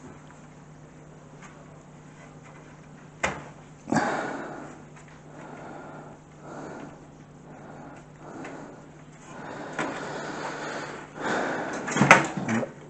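PC case parts being handled: two sharp knocks about three and four seconds in, then irregular scraping and rustling as the case frame is moved about.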